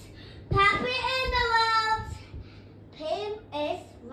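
A child singing without words: one long held note starting about half a second in, then two short sung syllables near the end.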